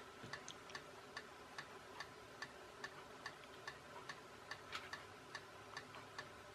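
Faint, regular ticking, about two and a half ticks a second, evenly spaced and steady.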